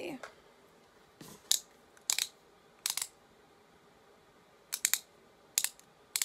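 Sharp plastic clicks in small irregular groups, from twisting the base of a Maybelline Instant Age Rewind Perfector stick to push the makeup up onto its sponge tip.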